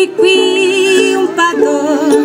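A woman singing a children's song over strummed ukulele chords, holding one long wavering note about half a second in before moving on to new notes.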